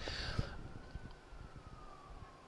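A faint, thin high tone that glides slowly down in pitch over about two seconds, above quiet room noise.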